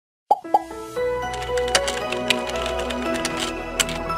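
Intro music for an animated title sequence: two short blips falling in pitch open it, then sustained musical notes with a few sharp clicks layered over them.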